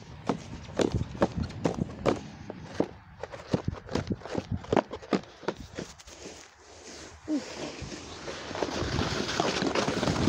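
Footsteps of boots walking over patchy snow and frozen dead grass, a quick, uneven run of steps. Near the end the steps fade under rising wind noise on the microphone.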